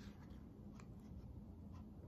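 Near silence: steady low room tone with a few faint, soft ticks.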